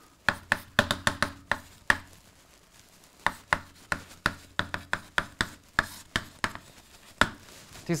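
Chalk tapping on a blackboard as symbols are written: a quick run of sharp taps, a short pause about two seconds in, then another run of taps that stops shortly before the end.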